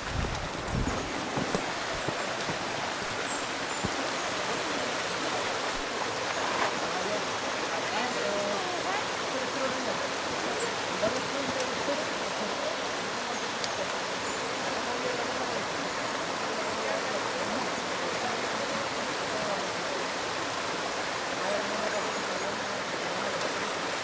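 Steady rushing of a rocky mountain stream cascading over boulders, with faint voices of people talking through it. A brief low thump in the first second.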